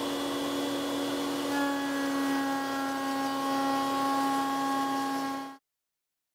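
Table-mounted router spinning a 1/2-inch up-cut spiral bit and cutting a rabbet in a hardwood frame piece pushed past it along the fence. A steady whine over a hiss, with higher whining tones joining about a second and a half in; the sound stops abruptly near the end.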